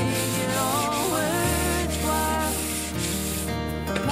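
Sandpaper on a hand sanding block rubbed back and forth over a bare wooden board in repeated scratchy strokes, smoothing the wood before painting. The strokes stop shortly before the end.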